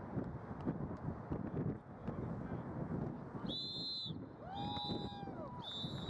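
Referee's whistle blown in three blasts in quick succession, starting about three and a half seconds in, over wind noise on the microphone.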